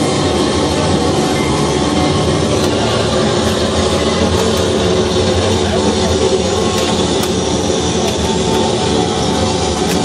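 Live experimental noise music: a loud, unbroken wall of dense drone, many held low tones layered under a constant hiss, with no rhythm or let-up.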